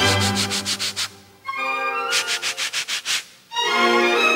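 Rapid scratching, two bursts of quick strokes about a second each, over orchestral string music.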